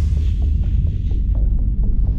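Deep, steady bass drone with a throbbing hum: cinematic sound design under a trailer's opening logo.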